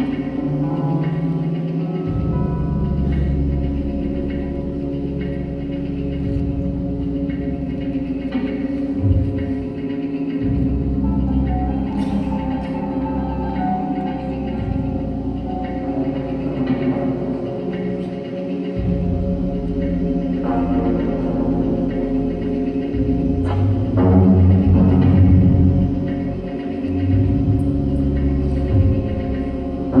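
Recorded music with a sustained low drone and deep bass notes that change every few seconds, growing louder about three quarters of the way through.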